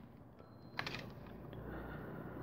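A single faint click about a second in, then the soft scratch and rustle of a pen tip on paper.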